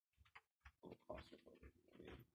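A man's faint mouth clicks, then a run of short, low throaty sounds from about a second in, made during a seizure.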